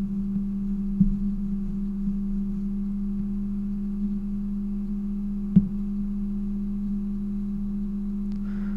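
A steady low electrical hum in the recording, with two faint clicks, about a second in and near 5.5 seconds.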